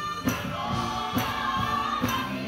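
A gospel praise team singing together in held notes over a live band. A drum beat lands about once a second.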